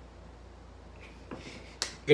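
Quiet room hum, then a single sharp hand clap near the end.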